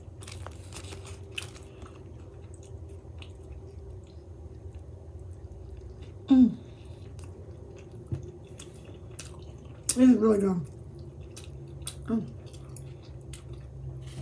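Close-up chewing and small mouth noises of someone eating a gyro in soft pita bread, over a faint steady low hum. A short hum of approval comes about six seconds in, and a brief "oh" about ten seconds in.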